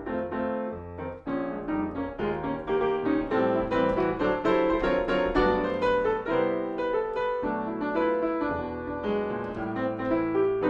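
Solo acoustic grand piano playing a jazz-fusion piece: a steady flow of chords and melody notes.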